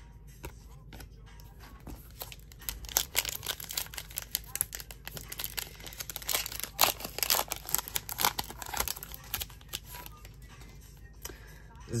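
A foil Panini Mosaic basketball card pack being torn open and crinkled by hand: a run of sharp crackles and rips through most of the stretch.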